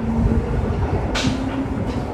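Steady low rumble with a faint hum, and a short hiss just over a second in.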